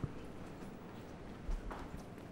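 Footsteps on a hard corridor floor, faint: a sharp step at the start and a dull thump about a second and a half in, over quiet room tone.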